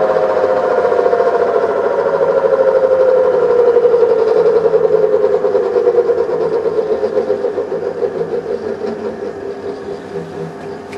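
A steady mechanical hum with a rapid pulsing beat, falling slowly in pitch and fading away through the second half.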